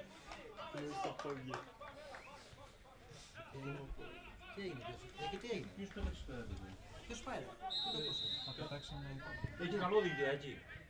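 Faint, indistinct voices of players and spectators talking and calling out at an outdoor football ground, picked up by the pitch-side microphone. About three-quarters of the way in, a brief, steady high whistle tone sounds.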